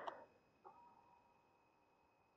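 Near silence, with a faint click about two-thirds of a second in, followed by a faint steady high hum.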